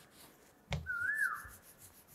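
A sharp click, then a short whistled note that swoops up and falls away.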